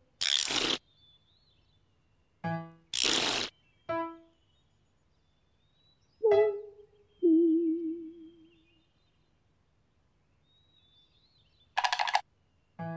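Comic sound-effect music: short pitched notes and two hissing whooshes, then a held note about six seconds in that turns into a wobbling tone, with faint birdsong behind.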